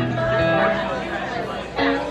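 Live band with electric guitars and keyboard playing held notes, with audience chatter over the music; a loud chord is struck near the end.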